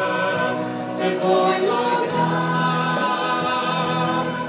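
A man and a young woman singing a Romanian worship song as a duet into microphones, holding long notes.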